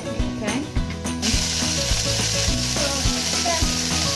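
Marinated beef poured from a plastic container into a hot wok, hitting the oil and bursting into a loud, steady sizzle about a second in, with the spatula scraping the container.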